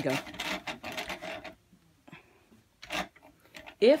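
Yarn being wound off a spinning wooden umbrella swift onto a cone winder: a fast, even rattling that stops about a second and a half in, then a single knock near three seconds.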